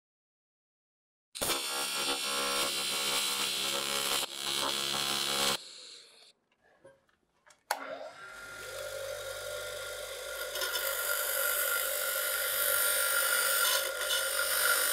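AC TIG welding arc buzzing on aluminum while tacking a brake-lever extension: one burst of about four seconds with a brief dip, a quiet gap, then a second, longer arc starting about eight seconds in. During the tack the tungsten electrode gets fouled.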